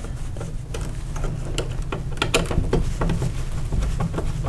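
Irregular small clicks and scrapes of a screwdriver turning a light switch's mounting screw into a plastic two-gang electrical box, with the metal switch strap knocking against the box, over a low steady rumble.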